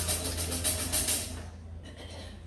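Live band music trailing off: a run of quick percussion strokes stops about a second and a half in. A steady low hum carries on underneath.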